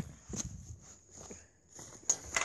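Faint rustling and a few light knocks from the phone being carried and handled, with footsteps, dropping briefly to near silence past the middle.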